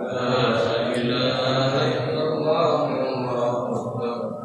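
Men's voices chanting together in a drawn-out Islamic devotional chant, held on a steady pitch.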